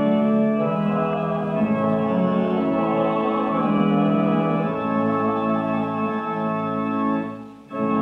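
Organ playing slow, sustained chords, with a brief break about seven and a half seconds in before the next chord sounds.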